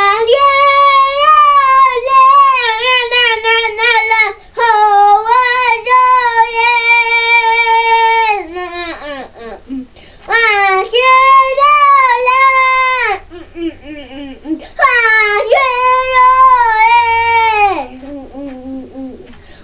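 A young boy's voice belting long, held wailing notes in rock-singer style, unaccompanied. Four sustained notes, each sliding down in pitch as it ends, with short breaths between.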